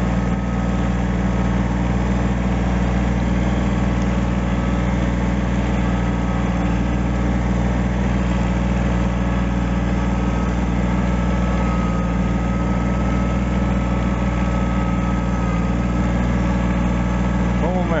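Kubota tractor's diesel engine running steadily under load as its front blade pushes deep snow.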